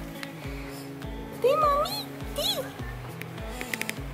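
Background music with a steady beat, over which a cat meows a couple of times around the middle.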